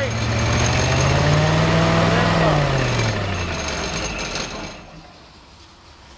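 Kohler Command PRO V-twin engine on a truck-mount carpet-cleaning unit revving up a little higher, then switched off and winding down to a stop about four seconds in, as the final step of its shutdown.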